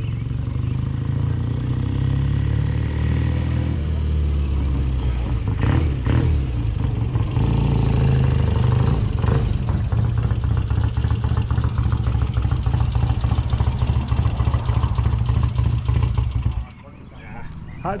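Vintage motorcycle engine running close by as it is ridden, its fast pulse rising and easing with the throttle. The sound cuts off suddenly near the end.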